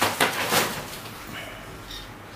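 Handloom cotton saree being unfolded and spread out: a few quick rustles and swishes of cloth in the first half-second or so, then faint handling noise.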